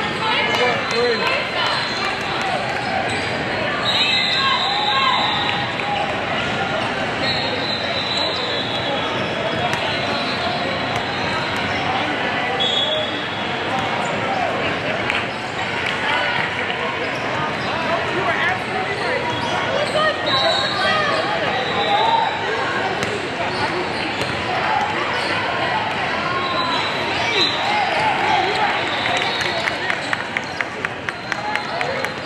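Basketballs bouncing on a hardwood court in a large echoing hall, with short high sneaker squeaks now and then over a steady babble of players' and spectators' voices.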